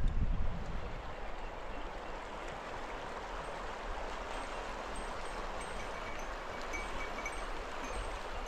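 Steady rushing of a shallow, clear mountain river flowing over stones, with a brief low rumble of wind on the microphone at the very start.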